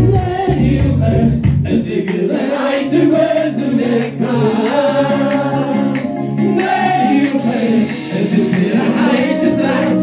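Congregation singing a gospel worship song together, many voices with keyboard accompaniment. The deep bass drops out about two seconds in, leaving the voices over held low chords.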